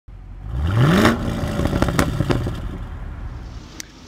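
A car engine revving: its pitch climbs quickly about half a second in, then it falls away into a rumble that fades over the next few seconds, with a few sharp clicks.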